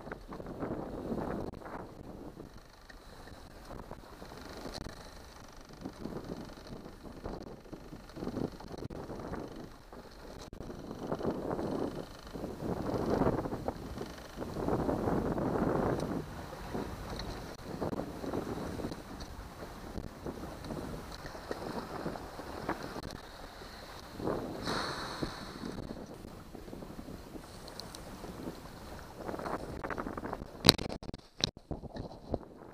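Wind buffeting the microphone of a motorboat under way, over the running outboard motor and water rushing past the hull. It comes in uneven gusts and is loudest a little before the middle.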